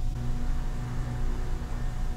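A steady low machine hum, with a faint steady tone above it.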